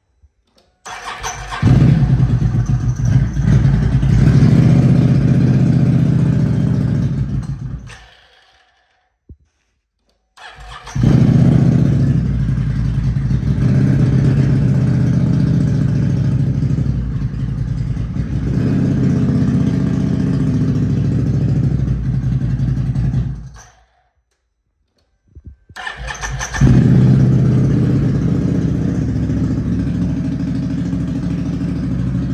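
Can-Am Renegade 1000's freshly rebuilt Rotax V-twin engine being started for the first time after the rebuild: it catches and runs steadily for several seconds, dies away, and is started again, three spells of running with short silences between them.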